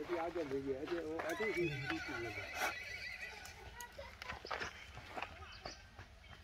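A horse whinnies for about two seconds, its wavering call dropping in pitch at the end. Scattered light knocks follow, like hooves shifting on dry ground.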